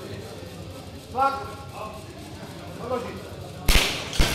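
Short, loud shouted calls during a competition bench press, then a loud sharp crack near the end.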